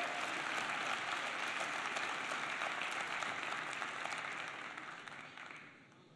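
Audience applauding in a large hall: a dense, steady clatter of many hands clapping, thinning and dying away over the last two seconds.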